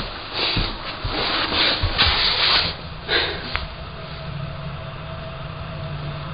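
Rubbing and handling noise with a few soft knocks, then a quieter low steady hum.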